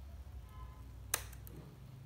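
A single sharp click about a second in, over a low steady hum.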